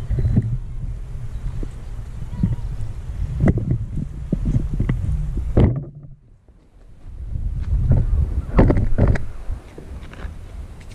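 Wind buffeting the camera's microphone as a low rumble, mixed with knocks and rustles from the camera being handled and moved. The rumble dies away for about a second past the middle.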